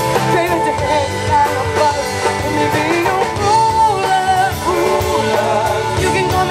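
Live rock band playing with electric guitars, bass and drums, and a woman's voice singing over them.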